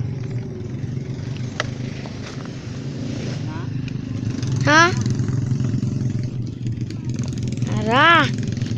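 A motor runs with a steady low hum, with a few sharp knocks of a blade cutting into the coconut palm's heart. A rising call cuts in about halfway, and a rooster starts to crow at the very end.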